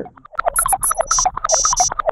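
Fast run of short electronic blips and buzzes, about ten a second, with bursts of high hissing tones.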